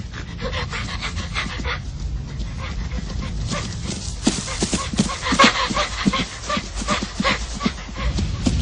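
Quick, rhythmic panting of an animal at a run, about four or five breaths a second, growing louder from about halfway through.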